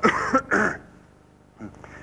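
A man coughing twice in quick succession, two short coughs within the first second.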